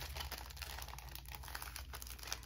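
Faint rustling of paper and plastic sticker packaging being handled and slid across a cutting mat, with scattered light ticks, over a low steady hum.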